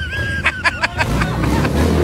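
Low rumble of a Harley-Davidson V-twin motorcycle engine rolling past, building in the second half. Voices are heard with it, and a quick run of sharp sounds comes about half a second in.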